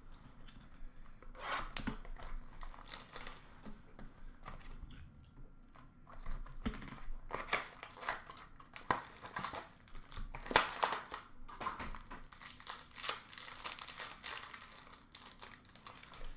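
Trading card pack wrappers being torn open and crinkled by hand, in irregular crackly bursts.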